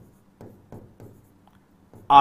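Faint pen strokes on a writing board: a handful of short scratches, a few per second, as a word is handwritten.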